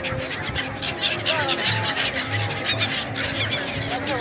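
A flock of gulls calling, many short cries overlapping.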